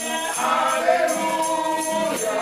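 Group singing of a hymn, led by a man's voice, with acoustic guitar and jingling hand percussion keeping the beat.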